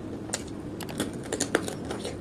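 Close-up crunching of a raw cucumber being bitten and chewed: a quick, irregular run of crisp cracks and crackles, about a dozen.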